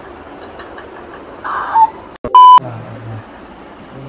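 A loud, steady electronic beep tone, about a third of a second long, edited into the soundtrack about two and a half seconds in, right after a brief cut to silence. A short loud burst of sound comes just before it.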